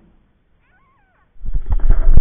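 A faint wavering high-pitched call, then about a second and a half in a loud rough rumble starts suddenly, close to the microphone: inline skate wheels rolling over rough asphalt, heard from a camera on a selfie stick, mixed with wind and handling noise.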